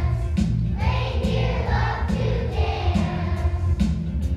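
A children's choir of second-graders singing together over an instrumental accompaniment with a steady bass beat.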